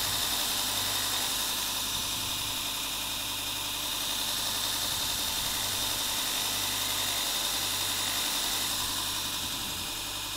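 Electric motor of a Robert Sorby ProEdge sharpener running steadily, spinning a buffing mop charged with green honing compound while a plane blade is honed against its underside. It gives a constant hum with a steady high whine.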